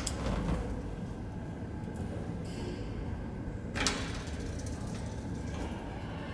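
Old KONE traction lift car running in its shaft, with a steady low rumble and hum and a short click about four seconds in.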